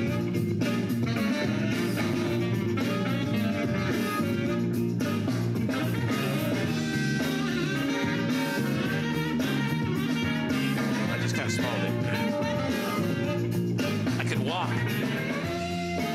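Music played at high volume through a Bose Wave Music System IV tabletop music system, turned up to show how loud it plays.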